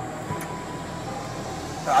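Steady background noise with a faint steady hum and faint voices, and a small tick about a third of a second in.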